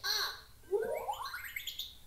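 Electronic alphabet book toy playing a sound from its small speaker: a brief voice-like note, then a whistle-like electronic sweep of tones rising steadily for over a second.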